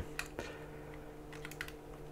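Faint, scattered clicks of a Phillips screwdriver turning a small screw out of a plastic plug-pack housing, over a faint steady hum.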